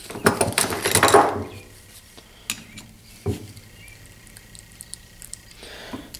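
Screwdriver prying at the seam of a Honda HRT216 lawnmower transmission case: a crackling, scraping rush about a second long at the start, then two sharp clicks a little under a second apart. It is the RTV sealant between the stuck case halves starting to give.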